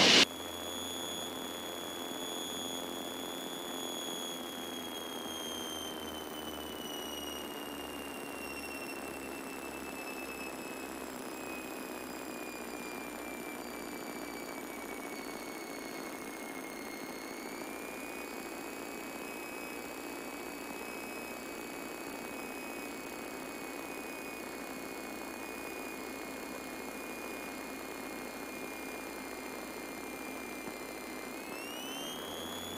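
Cabin drone of a Piper Seminole's twin piston engines throttled back to idle for a power-off stall. A thin high whine runs over it, sliding slowly down in pitch for about the first half, then lifting slightly and holding steady.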